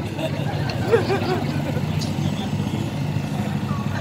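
City street ambience: people in a crowd talking faintly over a steady low hum, typical of nearby traffic or an idling engine.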